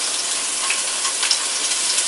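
Diced pancetta frying in garlic-infused olive oil: a steady sizzle with small crackles scattered through it.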